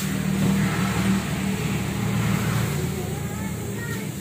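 A steady low motor hum, a little louder in the first half, with faint voices in the background.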